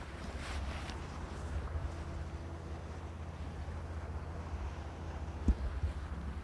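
Wind buffeting the microphone: a steady low rumble with a light hiss above it. A couple of sharp knocks come near the end.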